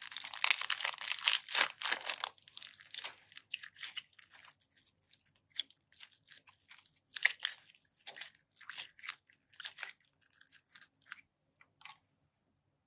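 Plastic piping bag crinkling as it is squeezed by hand, with a dense crackle for the first two seconds, then scattered sticky crackles and clicks as slime packed with small polymer clay slices is pulled out and worked between the fingers.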